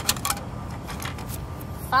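A few sharp clicks from a streetcar ticket vending machine's dispensing slot as a paper ticket is taken out, over steady low street noise.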